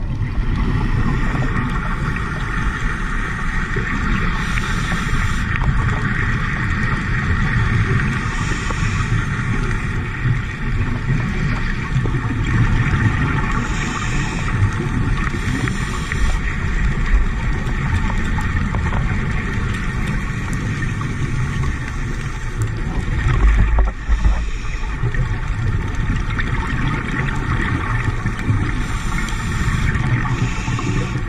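Underwater ambience picked up through a dive camera: a steady low drone of boat engines, with short hissing, bubbling bursts every few seconds.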